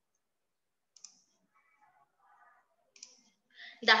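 Two faint, short clicks about two seconds apart in an otherwise quiet pause, then a woman's voice begins speaking near the end.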